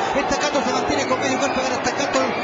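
Speech: a race caller's continuous commentary as the horses reach the finish.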